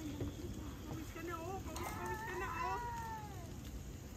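Faint distant voices with a drawn-out animal call that falls in pitch, about two seconds in, after a few shorter chirpy calls.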